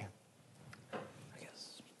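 Quiet room tone in a pause between speakers, with a faint murmured voice about a second in.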